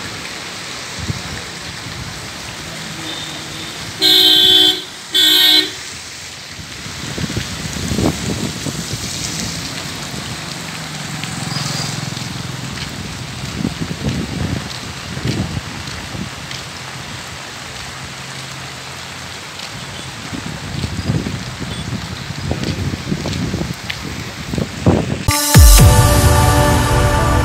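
A vehicle horn honks twice about four seconds in, two short blasts close together, over steady outdoor traffic noise with vehicles passing now and then. Loud music starts just before the end.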